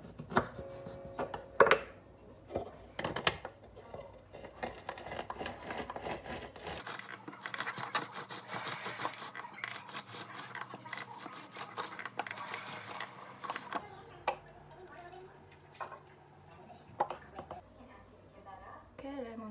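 A knife cutting a lemon on a wooden chopping board, with several sharp knocks in the first few seconds. Then a lemon half is twisted and pressed hard on a hand citrus juicer, a continuous scraping, squishing rasp for several seconds, followed by a few clicks as it is handled.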